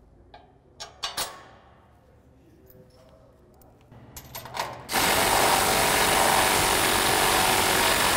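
A few light metal clinks and knocks as steel frame parts and bolts are handled, then about five seconds in a cordless impact driver starts up and runs loudly and steadily, driving bolts into the steel frame.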